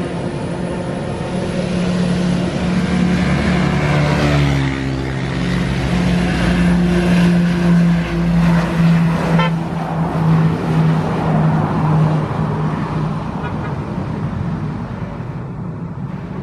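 Shorts 360 twin-turboprop freighter with Pratt & Whitney PT6A engines, running at high power on its takeoff roll as it passes close by. The propeller drone is steady and drops in pitch as the aircraft goes by, loudest near the middle, then fades as it moves away down the runway.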